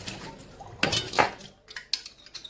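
Metal garlic press clinking as it is picked up and handled: two sharp metal clicks about a second in, then a few lighter ticks.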